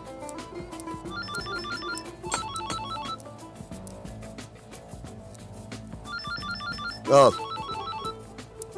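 Mobile phone ringing on a desk with an electronic trill ringtone: two short bursts of rapid high beeps, about six a second, then a pause of about three seconds before the next pair of bursts, over background music.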